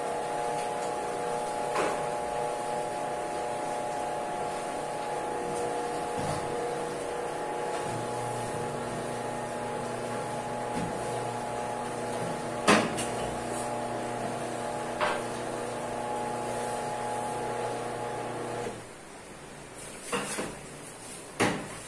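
Electric fondant sheeter's motor running with a steady hum, which cuts off near the end. A few sharp knocks sound over it, the loudest a little past halfway.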